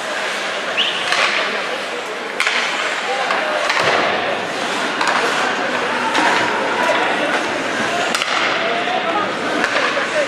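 Ice hockey skates scraping and gliding on the rink ice, with a few sharp knocks and the murmur of voices in the arena.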